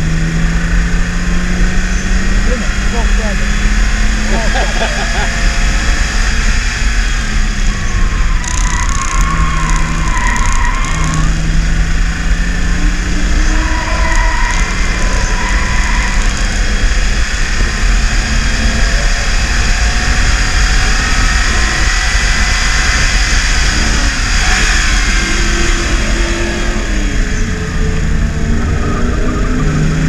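BMW E36 328is's straight-six engine heard from inside the cabin at speed on track, over heavy road and wind noise. The engine note climbs over the first several seconds and drops near the end as the car slows.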